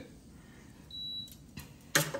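Power XL cooker beeping: one short, high, steady beep about a second in, part of a beep that repeats roughly every second and a half. A sharp click comes right at the end.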